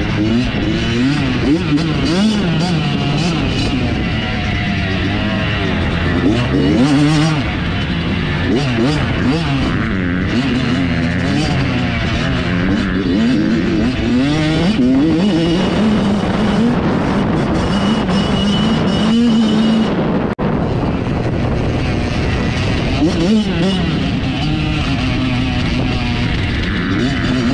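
Dirt bike engine revving up and down over and over as the rider accelerates, shifts and backs off along a dirt track, with wind rushing over the helmet-mounted microphone. The sound briefly cuts out about twenty seconds in.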